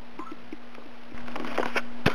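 Handling noise from a handheld camera being moved about: a few small ticks, then rustling and clicks from about a second in, over a steady low hum.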